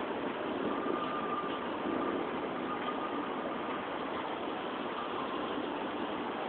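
Steady outdoor background noise, a even hum without clear events, with a faint thin tone about a second in that fades after a couple of seconds.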